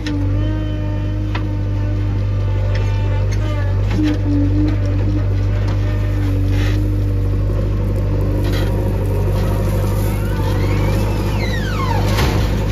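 JCB 3DX backhoe loader's diesel engine running steadily under load while the hydraulic backhoe arm digs, with a whine from the hydraulics. Near the end a high whine rises and then falls in pitch as the arm swings up.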